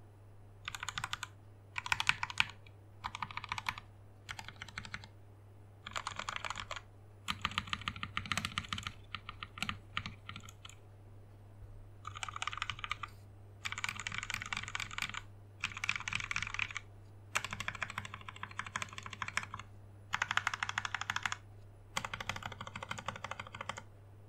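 Typing on a custom 60% mechanical keyboard with lubed Gateron Milky Top Black linear switches, a polycarbonate plate and DSA keycaps in a plastic case. It comes in bursts of rapid keystrokes, each a second or two long, with short pauses between.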